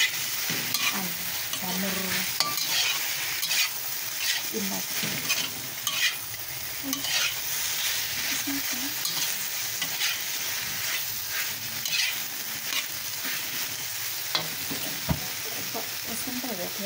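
Chicken, carrot, celery and enoki mushrooms sizzling in a hot wok while a metal spatula stirs and scrapes them. The scraping strokes come about once a second over a steady sizzle.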